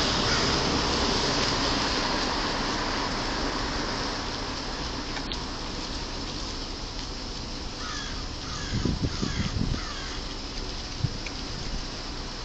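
Steady street noise from passing traffic that slowly fades. About eight seconds in comes a quick run of about five harsh bird calls, with a few low bumps at the same moment.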